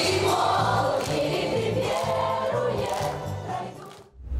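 A group of children singing together as a choir over music with a steady pulsing beat. The music fades down near the end.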